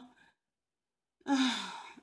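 A woman's voice trails off, then nearly a second of dead silence, then a single drawn-out sighing vocal sound that falls in pitch, a pause while she searches for the next word.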